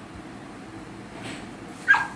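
A beagle whimpering faintly, then giving one short, sharp yip near the end.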